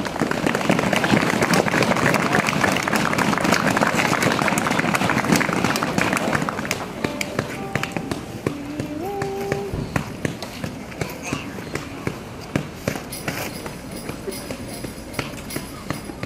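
Audience clapping that starts at once, dense at first and thinning out over several seconds, with voices mixed in. About eight seconds in come a few short held voice notes, then light scattered sounds.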